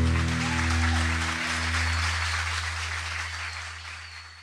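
Audience applauding as a rock band's final chord rings out live, with a low bass note sustaining beneath the clapping. The whole mix fades down toward the end.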